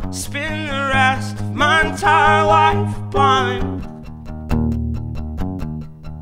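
Acoustic guitar strummed while a man sings long, wavering notes; the voice stops about four seconds in, leaving the guitar strumming alone.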